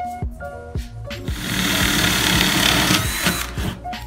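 An electric drill boring into a reclaimed pallet board for about two seconds, starting a little over a second in, over background music with a steady beat.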